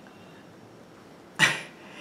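Quiet room tone, then about a second and a half in a single short, sharp vocal burst from the man, like a cough or a breathy laugh.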